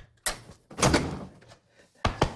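A hotel room's wooden door being opened: a sharp click right at the start, a short knock-like sound, then a louder rattle of the latch and door about a second in.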